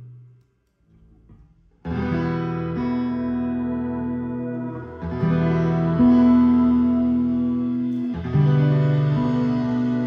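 A live band's music dies away into about a second of near silence, then comes back in all together about two seconds in: a strummed acoustic guitar with sustained, effects-laden droning chords that shift every couple of seconds.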